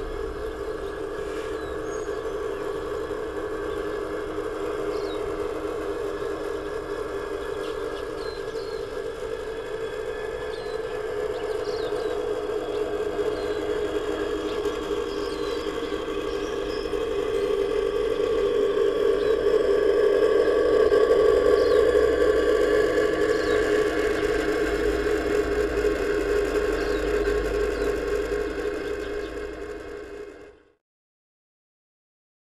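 A G-scale garden railway train running along the track, its motor and gearing giving a steady whine that grows louder as it passes close by in the second half and then eases off.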